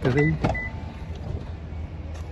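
Low, steady rumble of vehicles in a parking lot, with two short high beeps in the first second.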